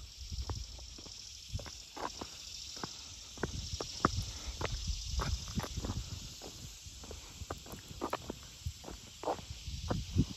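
Footsteps on an asphalt road at a walking pace, about two a second, over a steady high buzzing chorus of insects in the summer roadside vegetation.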